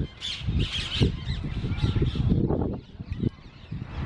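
A flock of birds perched in a bare tree, calling repeatedly in short high notes, over a low rumble that fades near the end.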